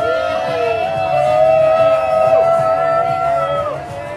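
A group of people whooping together in one long, loud held 'woo', several voices overlapping, that drops away shortly before the end.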